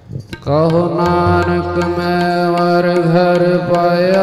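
Sikh devotional music sets in loudly about half a second in: long, steady held notes, sung or chanted over a sustained drone, with light drum strokes underneath.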